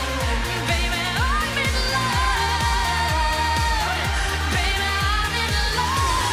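Uptempo pop song played live and loud, with a steady kick-drum beat of about two strokes a second. A woman's voice holds long notes that slide between pitches, without words.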